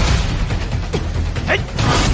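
Animated sword-fight sound effects: a dense, noisy whoosh of flying blue sword energy, over background music.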